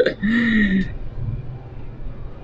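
A short drawn-out voiced exclamation in the first second, then the low steady rumble of a cable-car gondola cabin in motion, heard from inside the cabin.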